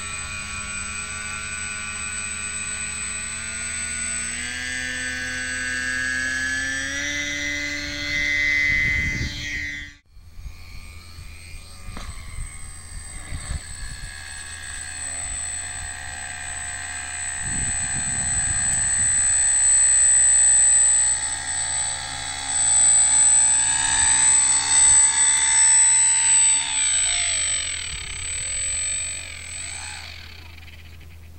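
Foam RC seaplane's electric motor and propeller whining, its pitch stepping up in stages with throttle, then cutting out abruptly about ten seconds in. It comes back as a steady high whine, then winds down and fades near the end as the throttle is closed.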